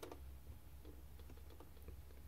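Faint handling noise: a few soft clicks around the start and scattered light ticks over a low steady hum.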